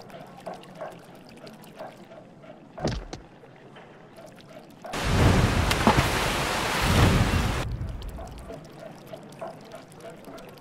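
Water splashing and sloshing as a hand plunges into it, loud for about three seconds from the middle, with two surges. A short whoosh comes a couple of seconds before it.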